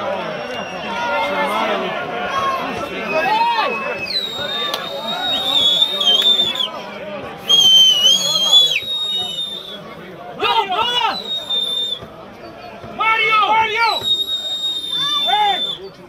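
Three long, shrill whistles with slightly wavering pitch, starting about 4, 7.5 and 14 seconds in, the middle one loudest. Men's shouting voices come between and around them on a soccer pitch.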